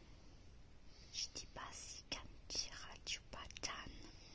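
Close-miked whispering: a person whispering in short breathy phrases with crisp consonant clicks and hisses, starting about a second in.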